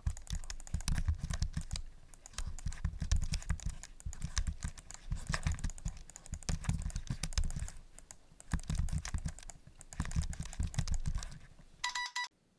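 Typing on a laptop keyboard: rapid runs of key clicks in bursts, broken by short pauses every couple of seconds. A short electronic beep sounds right at the end.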